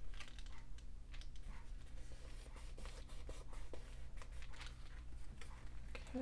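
Paper being handled and pressed down by hand: a run of small clicks, taps and rustles as a glued strip is smoothed into place and a sheet is folded over a page edge.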